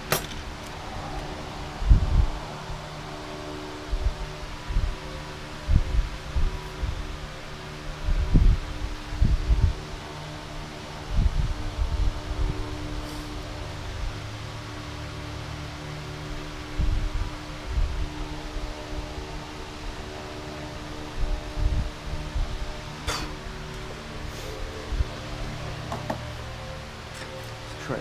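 Soft ambient background music with sustained held chords, over irregular low knocks, bumps and small clicks from handling a motorcycle carburetor bank and pliers.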